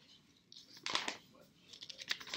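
Pages of a hardcover Bible being leafed through: a sharp paper rustle about a second in, then a few smaller ones near the end.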